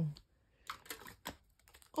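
A few light clicks and soft rustles, scattered over about a second, from small gift items being handled and picked up by hand.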